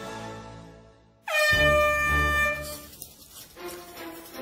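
A single air horn blast about a second in, with a short dip in pitch as it starts, held steady for about a second and a half, sounding the start of the heat. Background music fades out just before it.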